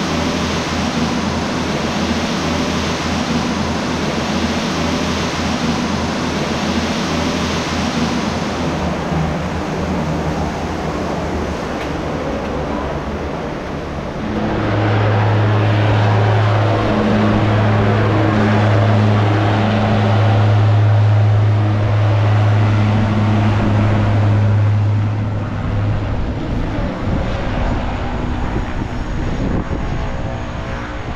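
Turboprop aircraft engines running on an airport apron: a steady noise that grows louder about halfway through, with a steady low propeller hum that holds for about ten seconds and then eases off.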